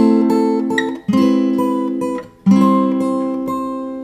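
Takamine acoustic guitar played fingerstyle: three chords of a fifth-fret A minor passage plucked about a second apart, each ringing out and fading, with single melody notes picked between them.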